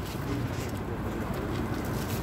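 Steady city street background noise, with a low cooing call.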